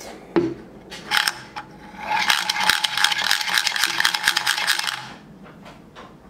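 3D-printed push-down spinning top, wound by pressing its coil plunger, then whirring on a table: a few short knocks, then a dense, fast clicking rattle with a faint steady whine from about two seconds in. The sound stops fairly abruptly about five seconds in.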